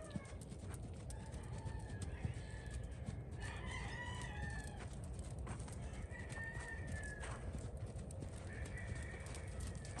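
A rooster crowing faintly, four times about two seconds apart.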